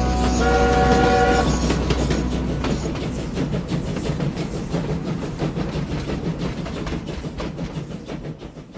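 Train sound effect closing the track: a horn sounds briefly about half a second in, then the rhythmic clatter of wheels on rails fades out.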